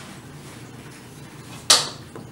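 A small hammer taps the front sight on a Trapdoor Springfield's steel barrel once near the end, a single sharp metal-on-metal strike with a brief high ring, knocking the sight blade out of its block after the pin has been removed.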